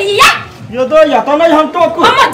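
Voices in a heated exchange: a short loud shout at the start, then a drawn-out, wavering voice-like sound that rises and falls in pitch for about a second.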